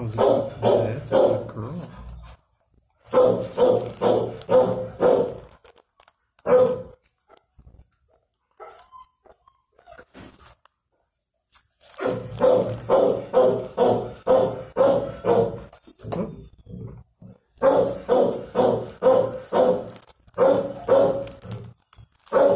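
A dog barking in quick runs of about three barks a second, with a mostly quiet stretch of several seconds in the middle.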